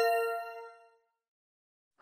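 A single chime ding rings out and fades away within about a second: the segment chime in a CCL interpreting test recording, marking the end of a dialogue segment and the cue to interpret.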